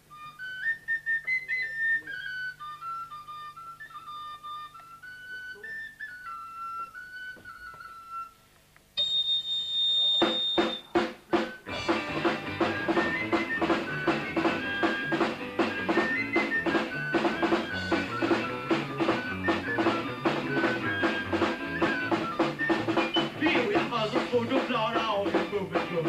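A high solo melody played into a microphone, then a brief high tone and a few quick stick clicks counting in. A live rock band with drum kit and electric guitars then starts up with a fast, steady beat and plays on.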